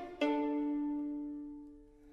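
Violin strings plucked pizzicato: a single chord struck about a quarter-second in, ringing out and fading nearly to silence.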